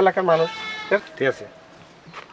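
A man's voice, drawn-out and wavering like crying or wailing speech. It trails off a little after a second in.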